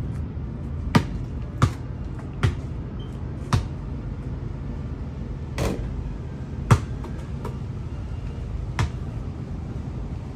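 A basketball bouncing on a paved driveway: single sharp thuds, four in the first few seconds under a second apart, then three more spread out, the loudest nearly seven seconds in, over a steady low rumble.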